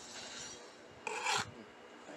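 Knife blade scraping and cutting through a toy car's plastic blister pack and cardboard backing: a short rasping scrape, then a louder scrape about a second in.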